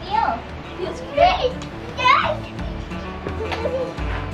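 Children's wordless shouts and squeals while playing: three short, high calls about a second apart, over background music.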